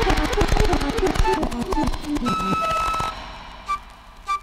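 Dub section of a Jamaican roots reggae discomix: a fast run of drum hits with short pitched notes stepping downward, then a single held high tone. Near the end the music drops away almost to nothing.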